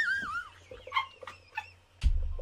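High-pitched laughter: a string of short rising-and-falling squeals that fades out in the first half second, leaving only faint scattered sounds.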